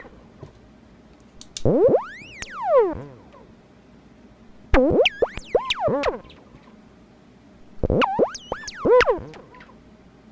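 MFOS Noise Toaster DIY analog synthesizer playing three separate bursts of swooping tones with quiet gaps between. About two seconds in comes a single tone that rises and then falls in pitch, and around five and eight seconds in come clusters of quick up-and-down swoops.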